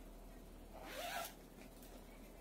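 A garment's front zipper being pulled open in one short, faint run about a second in.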